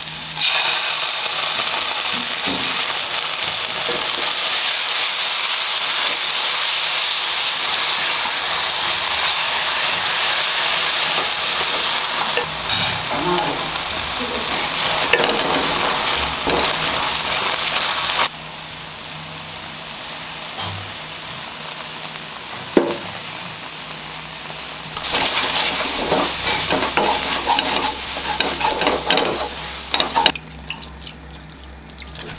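Sliced onions frying in hot oil in a non-stick wok, sizzling steadily while a wooden spatula stirs and scrapes the pan; later the pan holds a tomato-and-spice masala. After the halfway point the sizzle drops for several seconds, then comes back louder with busy stirring near the end.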